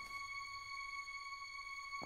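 Quiet ambient background music: a single steady high tone with faint overtones, held without change.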